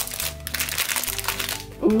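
A Pikmi Pops Doughmi foil blind bag crinkling as it is torn open by hand, with the crinkling dying away after about a second and a half.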